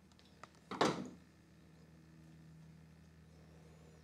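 Handling noise from small metal gauging tools worked by hand: a faint click, then one brief clatter about a second in. A faint steady hum sits under it.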